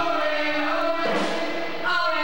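Amateur rock band playing live, with several voices singing together into microphones and holding long notes over the band.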